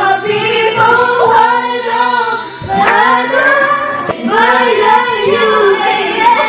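A woman singing a melodic line into a handheld microphone, in long phrases with gliding, wavering pitch and a short breath about two and a half seconds in.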